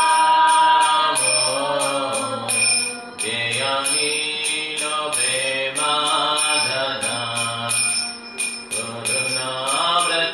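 A man chanting a devotional melody in long, gliding held notes, with small hand cymbals ringing in a steady beat.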